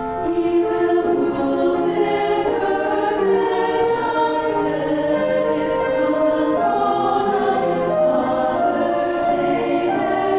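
Church choir singing an anthem, several voice parts holding long notes together.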